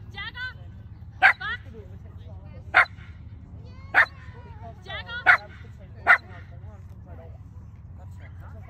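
A dog barking five times, single sharp barks about a second apart, with high whines between them.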